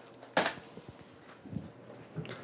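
A plastic bag of wire jumpers tossed aside, landing with a single short rustling knock about half a second in, followed by a few faint small knocks.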